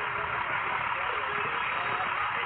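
Steady hiss of outdoor street noise picked up by a police body camera, with faint distant voices underneath.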